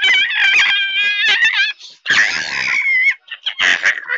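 A child's high-pitched shrieking laughter: two long shrieks, the second falling off at its end, then a short one near the end.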